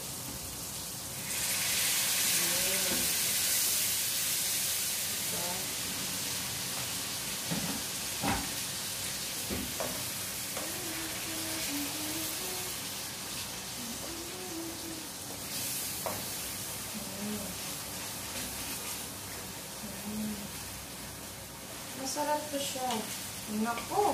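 Water poured from a kettle into a pan of hot oil and boiled eggs breaks into a loud sizzle about a second in, which holds steady and eases after about fifteen seconds. A wooden spatula stirs and knocks against the pan a few times.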